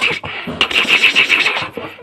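High, rapidly pulsing laughter, whinny-like, in long runs with a short break just after the start.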